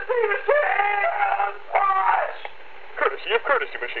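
A person's voice talking, with thin, telephone-like sound that has no bass or treble, pausing briefly twice.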